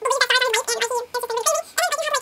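A person's voice held high and warbling, vocalising continuously without clear words, with a few short breaks.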